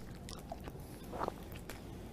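Faint mouth sounds of a man sucking a lollipop: a few soft, scattered clicks and smacks of the candy against lips and teeth.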